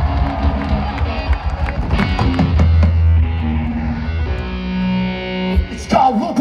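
Live rock band playing through a PA: electric guitar and a deep bass line hold low notes, and near the end a sustained chord rings out and then cuts off sharply.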